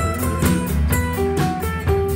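A live band plays without vocals. Acoustic guitars strum over an upright bass and a steady drum beat, and a melody moves in short stepped notes.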